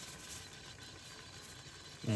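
Faint steady background hiss with no distinct events.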